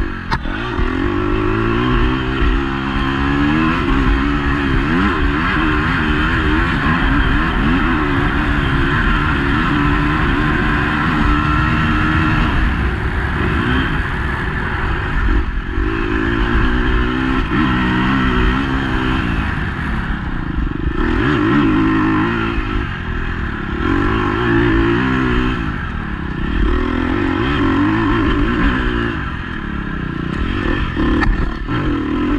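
Husqvarna enduro dirt bike engine, heard on board, revving up and down again and again as the rider works the throttle and gears along a trail, with brief lulls where the throttle is closed.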